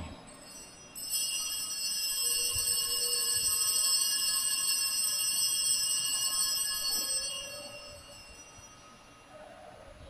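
Altar bells rung at the elevation of the chalice after the consecration: a high ringing that starts about a second in, holds for several seconds and fades away.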